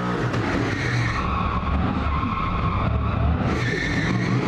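Drift truck spinning its rear tyres in a burnout: steady tyre squeal over the low drone of the engine under load.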